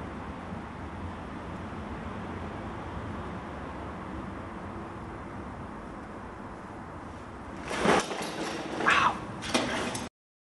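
Steady low background noise, then near the end three short loud animal calls, the middle one falling in pitch.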